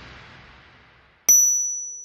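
The last of a music cue fades away, then about a second in a single bright, high-pitched ding sounds and rings out. It is a sparkle chime sound effect on a logo animation.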